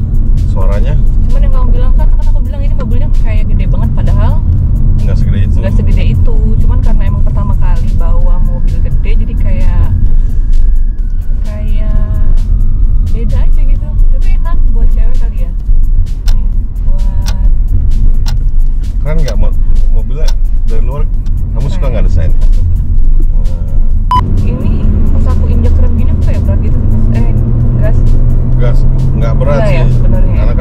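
Steady low road and engine rumble inside the cabin of a Mitsubishi Xforce cruising on a highway, with talking and background music over it.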